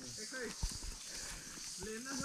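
Faint voices and a few footfalls on a dry, leaf-strewn roadside, over a steady high hiss.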